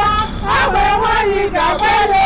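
Women singing in high voices, holding long notes and sliding between them, with a brief break about halfway through.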